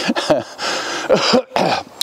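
A man laughing: a few short voiced chuckles, then breathy exhaled laughter.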